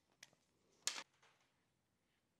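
Near silence, broken by a faint tick just after the start and one short, sharp handling noise about a second in, from hands working a braided PTFE fuel hose and its aluminium AN hose-end fitting.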